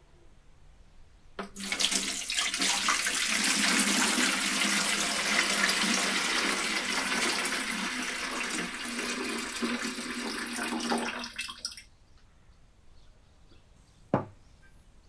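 Soaking water poured from a stainless steel bowl of soaked soybeans into a plastic watering can: a steady splashing stream that starts about a second and a half in, runs for about ten seconds and stops abruptly.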